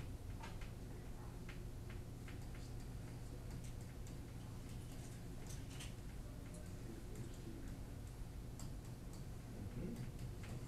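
Faint, irregular small clicks and taps of a stylus on a writing surface as handwriting is put down, over a steady low hum.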